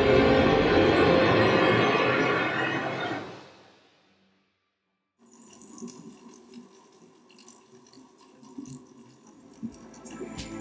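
A loud, dense logo sound effect that fades away about four seconds in. After a second of silence, quiet background music begins.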